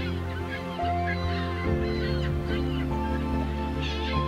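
Gulls calling again and again in short cries over steady instrumental music whose chords change a few times.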